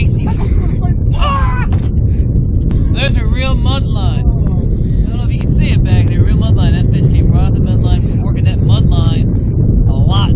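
Steady low rumble of wind buffeting the microphone on an open fishing boat on the water, with people's voices talking indistinctly over it.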